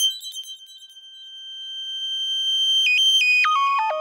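Electronic sound effect: a high steady tone that swells in loudness for about three seconds, then a run of tones stepping down in pitch.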